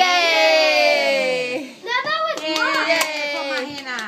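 Family cheering "yay": one long drawn-out shout, then more cheering voices mixed with a few hand claps in the second half.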